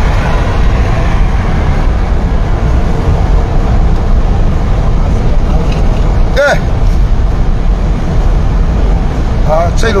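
Steady low rumble of a vehicle's cabin on the move, engine and road noise. A short voice sounds about six and a half seconds in, and talk starts near the end.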